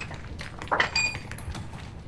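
A steel drill rod clinking once with a short metallic ring about a second in, among a few lighter knocks and scuffs.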